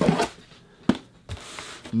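Packaging being handled as a boxed Funko Pop in a soft plastic protector is lifted out of a cardboard shipping box: a brief rustle, one sharp tap just before the middle, and a smaller knock after it.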